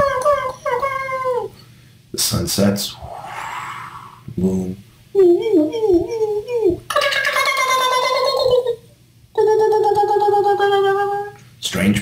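A man's voice imitating sound effects: a run of short falling calls, then short rough mouth noises, a wavering warble, and near the end a long held note that sinks slightly.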